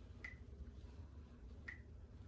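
Two faint, short clicks about a second and a half apart, from plastic paint cups and a stir stick being handled, over a low steady hum.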